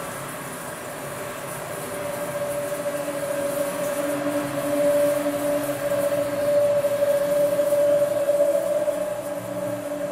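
The soundtrack of a screened video, played over auditorium speakers: a sustained drone with a steady higher tone and a quieter lower tone over a hiss. It grows louder from about two seconds in and swells through the middle.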